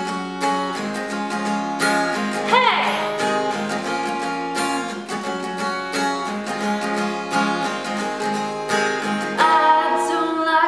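Steel-string acoustic guitar with a capo on the first fret, strummed in a steady down-up rhythm on open and barre chords.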